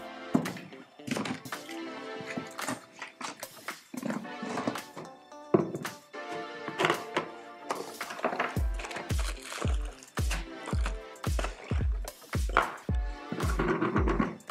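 Background dance music. The steady kick drum drops out, then comes back about eight seconds in at about two beats a second.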